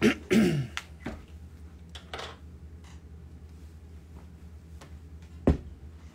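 A person clears their throat once at the start, with a voiced, falling rasp. Near the end there is a single sharp knock, over a low steady hum.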